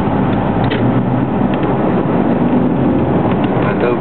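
Car engine and road noise heard from inside the moving car, a steady low rumble.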